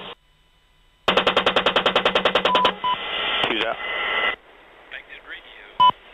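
AH-64D Apache's 30mm M230 chain gun firing a short burst of about ten rounds, at roughly ten shots a second, starting about a second in.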